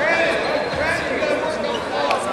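Indistinct voices of spectators talking and calling out in a gym.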